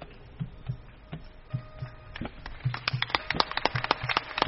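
Faint, irregular light taps and low thumps that grow quicker and denser in the second half, over a faint steady held tone.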